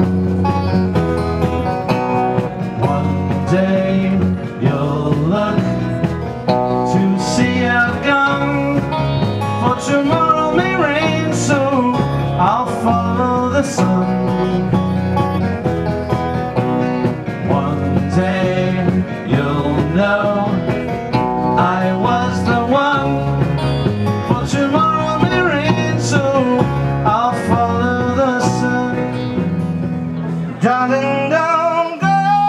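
Live band playing a mostly instrumental passage on electric guitars, electric bass and drums.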